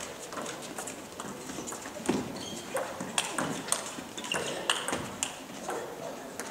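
Table tennis rally: the ball clicking sharply off rubber-faced paddles and the table top in a quick, irregular series of hits.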